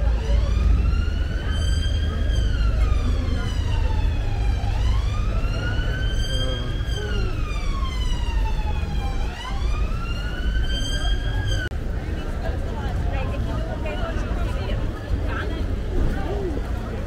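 Emergency vehicle siren sounding a slow wail, its pitch rising and falling about every four to five seconds, over a steady low street rumble. It cuts off suddenly about three quarters of the way through.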